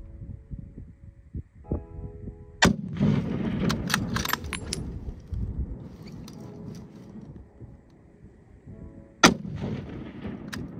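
A single rifle shot from a scoped bolt-action hunting rifle fired from a prone rest: one sharp report about nine seconds in, the loudest sound here. Earlier, about two and a half seconds in, there is a softer sharp knock followed by a few seconds of noise.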